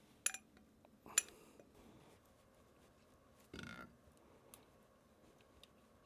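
Quiet kitchen handling: two light clicks in the first second and a half as maple syrup is poured from a small glass bottle into a stainless-steel saucepan, then a short soft sound about halfway through while the syrup is being warmed and stirred with a silicone spatula.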